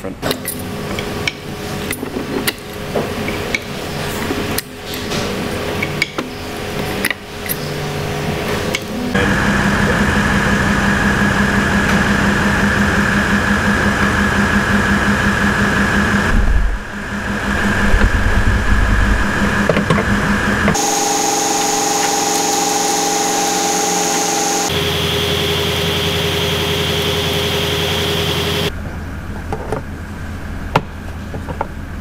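Workshop sounds during transmission work: metal parts clinking and knocking for the first several seconds, then a run of steady machine drones that change and cut off abruptly several times.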